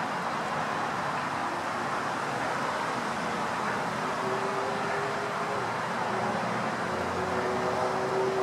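Steady outdoor background noise of road traffic, with no sudden sounds; a faint steady hum comes in about halfway through.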